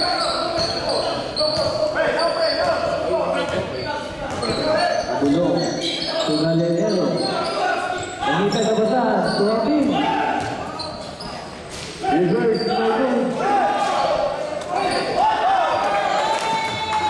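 Basketball game in a large, echoing gym: a ball bouncing on the court amid shouting voices, with sharp knocks throughout.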